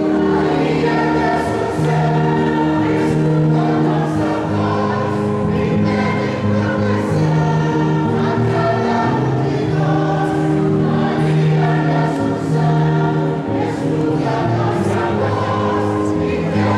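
Choir singing a hymn, with sustained notes shifting from chord to chord.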